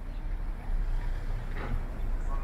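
Busy street ambience: a steady low rumble, with a faint voice of a passer-by briefly near the end.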